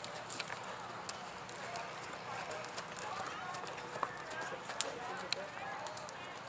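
Indistinct talking of people in the background, with a horse trotting on sand footing and scattered sharp clicks, the loudest a few seconds in.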